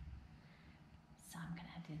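Quiet room tone, then a woman's soft, breathy speech starting a little over a second in.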